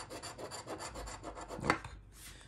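A coin scraping the coating off a paper scratch-off lottery ticket in quick back-and-forth strokes, about eight a second.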